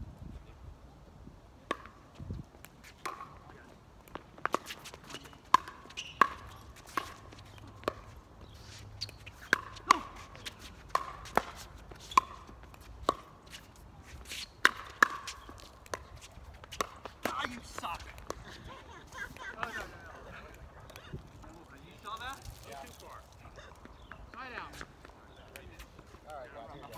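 Pickleball rally: a perforated plastic ball struck back and forth with paddles, sharp pops roughly a second apart that stop about three quarters of the way through.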